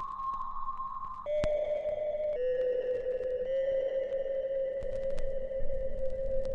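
Slow, sombre background music of long held, almost pure electronic tones. The held note steps down in pitch a little over a second in and then stays low and steady. A few faint clicks sound over it.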